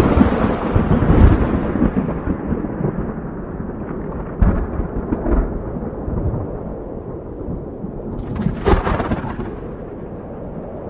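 Rolling thunder. A loud rumble fades over the first couple of seconds, a sharp crack comes about four and a half seconds in, and another peal follows near the end.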